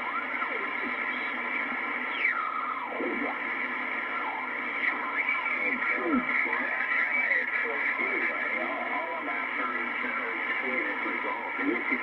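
Swan 700CX HF transceiver receiving a very noisy band: steady static with single-sideband voices from other stations. The voices slide in pitch as the main tuning dial is turned.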